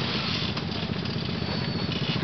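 Quad (ATV) engine running steadily at low revs as the quad crawls down a rutted dirt trail.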